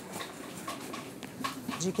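Shop background with a low murmur and scattered faint clicks, and a woman's voice coming in near the end.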